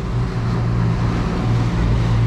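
Suzuki outboard motor running steadily as the boat travels at speed, a low even engine hum under the rush of wake water and wind.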